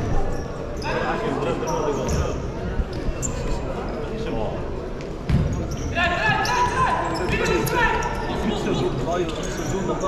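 Futsal being played in a large sports hall: a ball struck and bouncing on the hard court, each knock echoing round the hall, with players and spectators shouting over the play in the second half.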